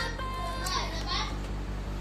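Children's voices at play, short calls about a second in, over background music with a steady low beat.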